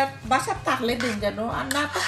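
Speech, with a metal spoon clinking and scraping against an aluminium cooking pot as meat in gravy is stirred.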